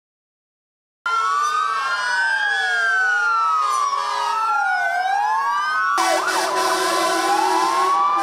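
Several fire engine sirens wailing at once, their rising and falling tones crossing each other, with a steady lower tone under them. They start after about a second of silence, and about six seconds in the sound jumps abruptly to another siren over a steady hiss.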